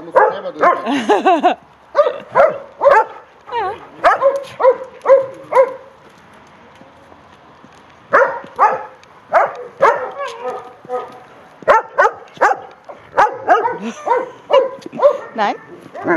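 Dogs barking while playing rough together, a run of short barks several a second, breaking off for a couple of seconds about a third of the way in before starting again.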